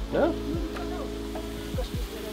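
Seaweed being stir-fried in a metal wok, sizzling as a spatula stirs it, with background music holding steady notes.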